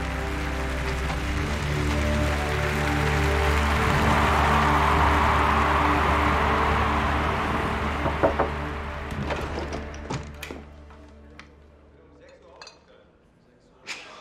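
Film score with sustained notes under a large stadium crowd cheering. The cheering swells and then fades out about ten seconds in, leaving a quiet room with a few light knocks near the end.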